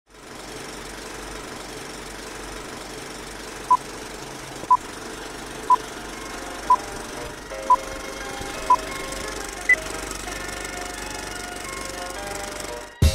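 Film-projector clatter and crackle under a countdown-leader sound effect: short beeps one second apart, six at the same pitch and then a higher seventh. Soft held musical tones fade in about halfway.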